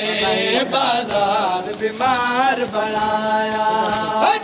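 A man's voice chanting a noha, a Shia mourning lament, in long drawn-out notes that waver in pitch.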